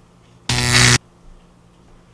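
Electrostatic dust-print lifter's high-voltage unit switched on at high, giving a loud electric buzz for about half a second that starts half a second in and cuts off abruptly. A faint steady hum sounds before and after the buzz.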